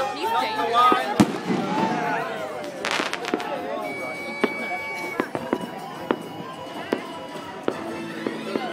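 Fireworks going off at intervals: a sharp bang about a second in, a cluster of bangs around three seconds, then scattered pops through the rest. A crowd's voices are heard in the first couple of seconds.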